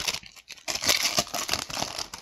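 Wrapper of a hockey card pack being torn open and crinkled by hand: a short rustle, then a longer crackling stretch through the second half.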